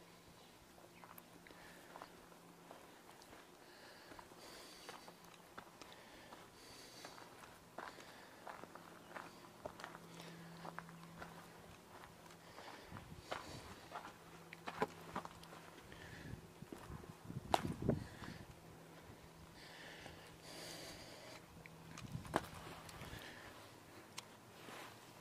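Faint footsteps of a person walking, with irregular scuffs and clicks over a low steady hum. A few louder thumps come about three-quarters of the way through.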